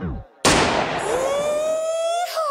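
Edited transition sound effect. The music cuts out with a quick downward sweep, then a loud burst about half a second in fades under a rising, siren-like tone that holds to the end.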